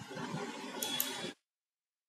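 Faint room noise with two soft computer mouse clicks about a second in, refreshing the status screen. Then the sound cuts off abruptly to dead silence.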